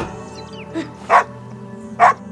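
A dog barks twice about a second in, the second bark louder, over music with long held notes.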